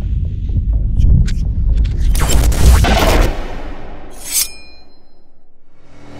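Cinematic title-sequence sound effects: a deep rumbling bass with quick swishes, then a loud hit about two to three seconds in. A short bright swish with a ringing tail follows, and it settles into a quieter, evenly pulsing low drone.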